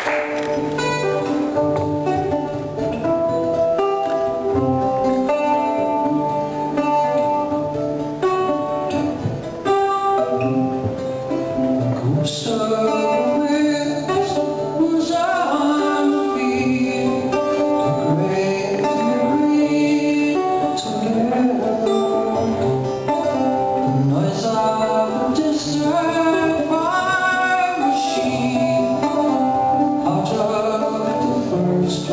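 Portuguese guitar plucking a melody over keyboard chords, a live instrumental passage for the two instruments.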